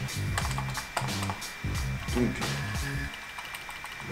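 Computer keyboard typing: a quick run of key clicks, over low background music that cuts off about three seconds in.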